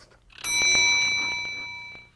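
A bell rings once: a bright ding struck about half a second in, with several clear high tones that ring out and fade over about a second and a half.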